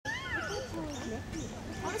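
Indistinct voices of several people talking, among them a high-pitched voice that rises and falls near the start.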